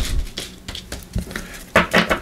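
Tarot cards being slid and tapped into line on a bamboo mat by hand: a few short taps and scrapes, spaced out.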